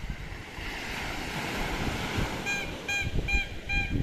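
Small sea waves washing onto a sandy beach, the surf swelling through the middle, with wind rumbling on the microphone. Near the end, four short high-pitched notes repeat about twice a second.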